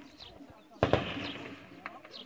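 A single sharp gunshot about a second in, with a tail that dies away over about half a second, amid voices.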